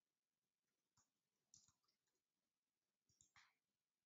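Near silence with a few faint computer keyboard keystrokes: a single click about a second in, then small clusters of clicks at about a second and a half and again near the end.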